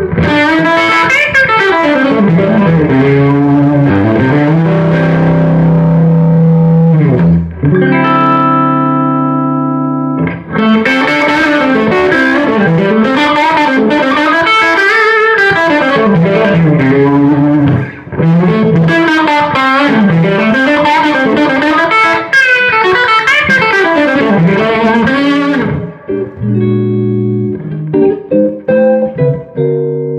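Les Paul style electric guitar with Seymour Duncan pickups played through a hand-wired 20-watt Longbeard Tritone tube amp with 6V6 power tubes, its soul switch set to tight (blackface voicing), at moderate volume. Fast lead runs give way to a held chord about eight seconds in, then more quick runs, ending with short chord stabs near the end.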